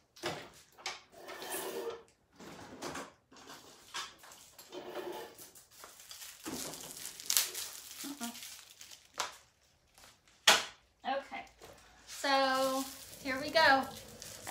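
Rummaging through supplies for a chip brush: scattered knocks, rustles and light clatter of things being moved and handled, with one sharp click about three-quarters of the way through.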